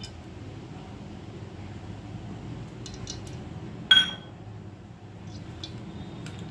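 A metal utensil clinks once against an aluminium cooking pot about four seconds in, with a short metallic ring. A few faint ticks come just before it, over a steady low hum.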